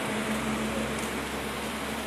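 Steady outdoor street background noise: an even hiss with a faint low hum and no distinct events.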